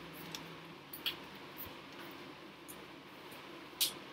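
Faint clicks and small handling noises while an external computer keyboard is being connected, with a sharper click near the end.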